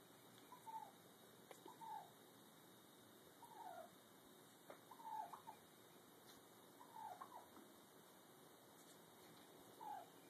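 A turkey tom giving soft, short calls that fall in pitch, about six of them a second or two apart.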